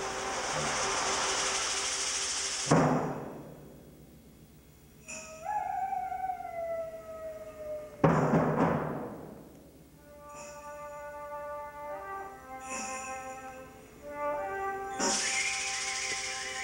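Concert band playing with heavy percussion: a held, bright chord cut off by a loud percussion strike, a falling sliding tone, a second loud strike with a long ringing decay, then steady sustained chords that swell again near the end.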